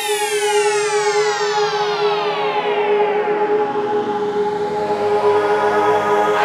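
Synthesized logo-ident sound effect: a dense sweep of tones gliding down over about four seconds above a held two-note drone, settling into a steady chord near the end.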